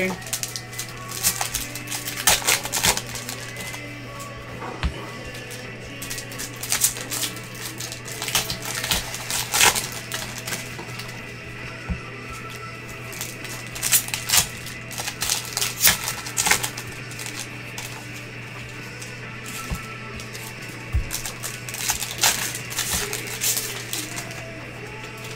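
2021 Bowman baseball cards being flicked through and sorted by gloved hands: a scattered run of sharp little paper clicks and snaps.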